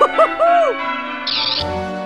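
Church bells ringing, dubbed in as a comic wedding-bells sound effect, with a brief high bird-like chirp a little past halfway.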